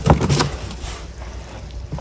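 Cardboard shipping box being opened, its flaps pulled and bent back: a couple of sharp cardboard crackles in the first half second, then a quieter rustle.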